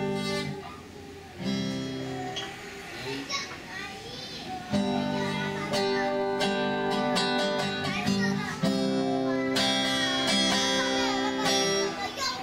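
Steel-string acoustic guitar strummed, first a few chords let ring with gaps between them, then steadier strumming from about five seconds in.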